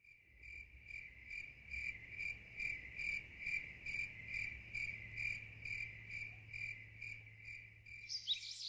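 An insect chirping at an even pace, about two and a half short chirps a second, over a low steady hum.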